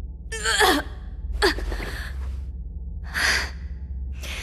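A young woman's breathy gasps and sighs as she comes round, three in all. The first is a short voiced moan that wavers and falls in pitch, all over a low steady hum.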